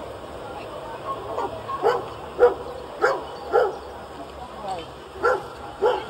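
A dog barking: four sharp barks about half a second apart, starting about two seconds in, then two more near the end.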